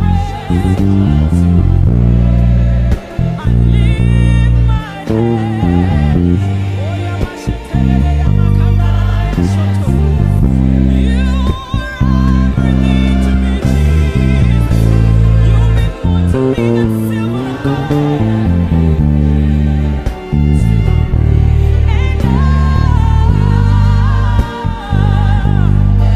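Five-string electric bass playing a chord progression in A major with passing notes between the chords, along with a recorded gospel worship song with singing.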